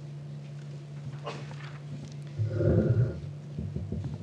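Podium gooseneck microphone being handled and adjusted: a loud rubbing rumble with knocks about two and a half seconds in, then a few lighter knocks near the end, over a steady low hum from the sound system.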